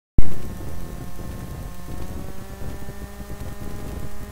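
A sharp pop as the recording starts, then steady room noise: a low rumble and hiss with a faint steady hum of several fixed tones.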